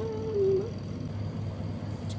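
A single drawn-out, high-pitched vocal call lasting under a second near the start, its pitch rising, holding, then sliding down, over a steady low hum.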